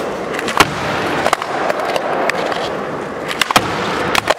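Door-hinged folding skateboard rolling on a smooth concrete floor, with sharp clacks from the board: a loud one about half a second in, a few lighter ones, and a quick cluster near the end as it meets the ledge.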